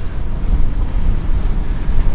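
Wind buffeting the microphone on the deck of a sailing catamaran under way, a steady low rumble, with the wash of open-water waves beneath it.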